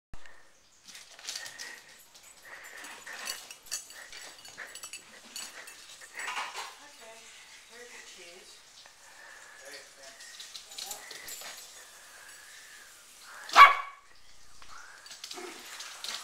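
A small dog barks once, short and loud, about two seconds before the end, after a stretch of fainter scattered sounds.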